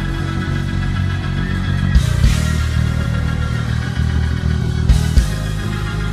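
Church band music of a gospel praise break: sustained chords over a heavy, steady bass, with sharp drum hits about two seconds in and twice near five seconds.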